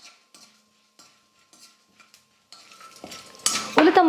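Perforated steel ladle clicking and scraping against a stainless-steel kadai as peanuts and dals are stirred in hot oil, a few light strokes spaced apart. Light sizzling rises in the last second or so.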